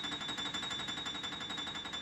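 Grand piano playing a rapid, sustained tremolo, the fast repeated strokes carrying a bright, high ringing tone with a lower note sounding beneath it.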